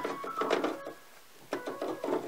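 Electric keyboard played softly in short notes, mixed with light clicks, dipping quieter for about half a second midway.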